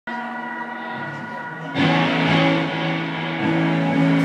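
Band playing live, with electric guitars holding sustained chords. The sound swells fuller and louder just under two seconds in.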